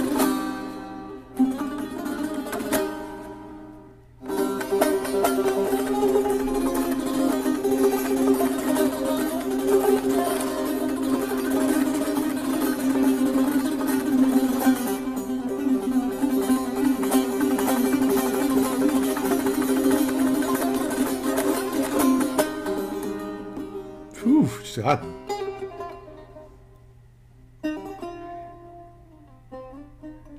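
Long-necked Persian lute played in fast, dense plucked and strummed runs, with a brief pause about four seconds in; the playing thins to sparse, separate notes near the end.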